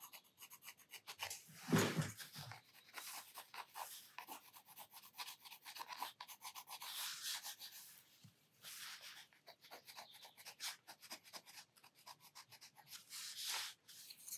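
Derwent Inktense watercolor pencil scratching faintly over mixed-media sketchbook paper in quick short strokes as it doodles and shades. There is one brief louder rub about two seconds in.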